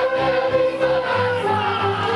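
Hungarian folk song sung by a group in chorus over music, with long held notes.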